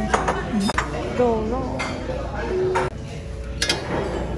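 Plates and metal utensils clinking several times, sharp and brief, over the chatter of voices in a restaurant.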